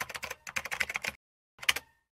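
Computer keyboard typing sound effect: a quick run of key clicks for about a second, a pause, then one last short burst of clicks near the end.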